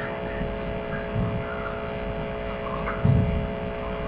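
Steady electrical hum over low background noise, with a brief low thump about three seconds in.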